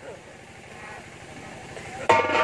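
A quiet lull with a faint steady low hum and faint voices in the background.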